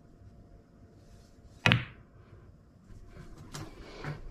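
A cue striking the cue ball low for a stun screw shot, one sharp clack of cue and balls about one and a half seconds in, with a short ringing tail. Fainter clicks follow near the end.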